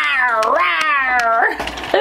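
A toy alligator from a Hot Wheels set playing an electronic voice sound: two warbling calls, each falling in pitch, that sound like the dinosaur from Peppa Pig.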